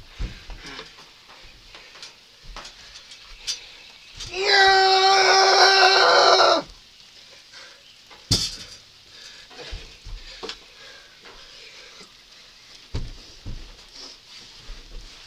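A young person's long, steady-pitched yell held for about two seconds near the middle, among scattered thumps and bumps from bodies wrestling on a bed.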